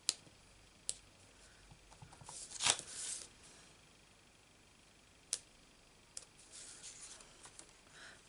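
A small clear acrylic stamp block clicking down onto cardstock on a craft mat, four sharp clicks in all, and the card paper sliding and rustling, loudest a little under three seconds in.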